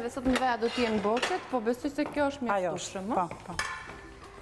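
Light clinks of cutlery against dishes under a woman talking.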